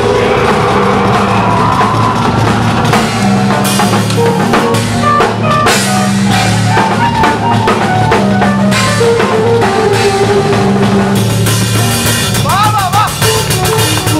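A death metal band playing live, with the drum kit close and loudest: fast bass drum and snare strokes and cymbals over distorted guitars and bass holding low riff notes. A short wavering high note sounds near the end.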